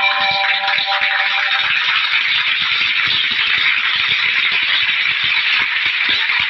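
Audience applauding, a dense steady clatter of many hands clapping. The last held notes of a guitar music sting fade out over the first second and a half.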